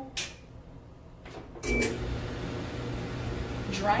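Electric clothes dryer being started: button clicks and a short beep from the control panel, then about a second and a half in the drum motor starts and keeps running with a steady hum, showing the dryer works on its newly fitted three-prong cord.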